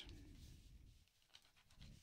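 Near silence: a faint low background rumble that fades away, with a couple of very faint ticks.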